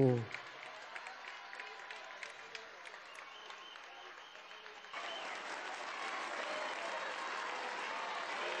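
Audience applauding, a dense crackle of many hands clapping that grows louder about five seconds in.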